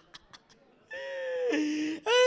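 A man's long drawn-out vocal cry into a microphone, starting about a second in. It holds one pitch and then drops to a lower note near the end.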